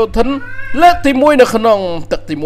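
Speech: a person's voice talking with long, sweeping rises and falls in pitch.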